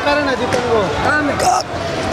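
Speech only: a man talking in a loud, continuous stretch that the recogniser did not write down.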